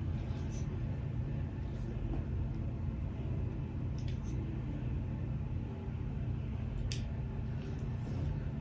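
Steady low rumble of background room noise, with a few faint light clicks as a flat iron is clamped and drawn through wig hair.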